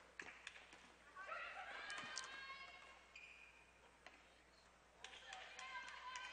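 Faint indoor basketball court sound: scattered basketball bounces and footfalls on the hardwood floor, with distant voices.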